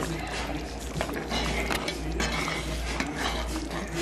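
Metal spoon stirring thick cornmeal and coconut milk in a cast-iron pot, scraping against the pot, with a sharp clink about a second in.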